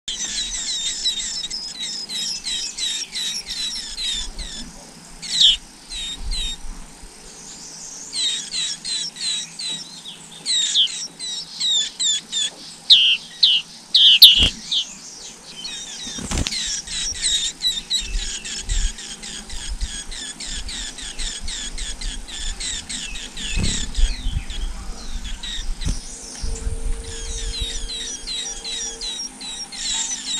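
Songbird nestlings begging in the nest: rapid runs of thin, high chirps, loudest in the first few seconds and again from about 8 to 15 s, picking up once more near the end. Two sharp knocks sound a little after the middle.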